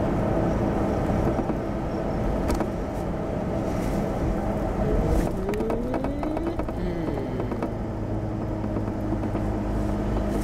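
Car driving, heard from inside the cabin: a steady engine hum and road noise. About halfway through, a note rises and then falls back, and a few light clicks and rattles are heard.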